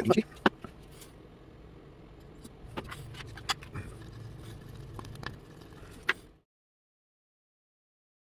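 Small clicks and light scraping of a wooden stick stirring five-minute epoxy in a plastic paint palette, over a low steady hum. The sound cuts off suddenly about six seconds in.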